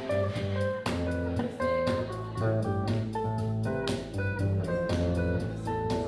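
Live band music: electric guitar and bass guitar playing, with a bass line under guitar notes and evenly spaced strummed strokes.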